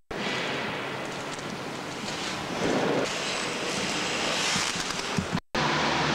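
Inline skate wheels rolling over a concrete car-park floor, a steady rushing noise. It cuts off abruptly about five and a half seconds in, and a short low hum follows.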